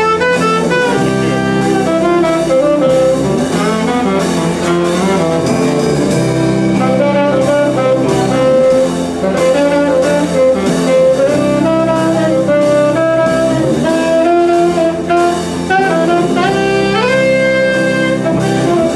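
Live band playing a horn-led passage: a saxophone carries the melody in held and sliding notes over electric guitar, bass guitar and drum kit.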